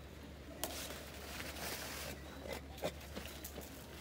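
Leafy castor oil plants rustling as they are pulled up by hand, with a few short snaps of stalks breaking.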